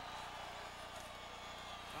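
Faint, steady background hiss with a low hum: the quiet sound bed of an old TV football broadcast between the commentator's lines.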